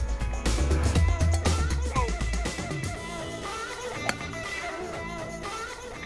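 Background music with guitar and drums; the heavy bass beat drops out about two and a half seconds in, leaving a lighter guitar part.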